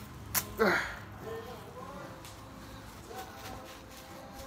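Wrapping rustling and tearing as it is pulled off a glass soda bottle: a couple of sharp clicks and a quick swish in the first second, then faint handling rustles.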